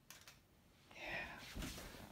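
Faint handling noise: soft rustling with a few light knocks, starting about a second in.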